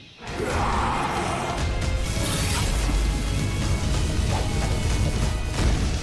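Cartoon action soundtrack: dramatic score mixed with a dense, continuous rumble of battle sound effects. It begins with a noisy burst just after a brief hush.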